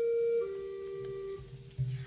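Organ playing two soft held single notes at the close of the hymn, the first higher, the second lower, fading out about a second and a half in. A soft low thump near the end.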